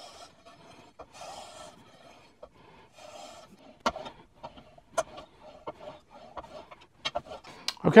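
Chisel edge held in a roller honing guide being drawn across abrasive film sheets on glass, putting on a 30-degree secondary bevel: three short rasping strokes about a second apart, then light clicks and taps as the guide is shifted along the sheets.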